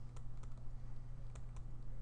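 A few faint, scattered clicks of a stylus tapping on a pen tablet during handwriting, over a steady low hum.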